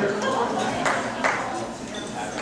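Indistinct talking of people in a large, echoing room, with no clear words.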